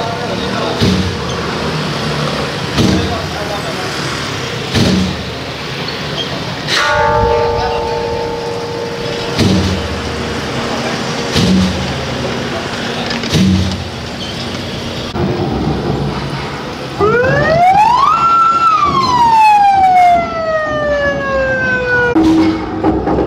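A siren winding up in pitch late on, holding briefly at the top, then winding slowly down. It plays over street noise with a knock or drum beat about every two seconds and two held horn-like tones earlier on.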